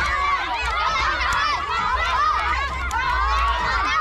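A group of children shouting and cheering all at once, many high voices overlapping without a break, urging on a tug-of-war. A steady low rumble sits underneath.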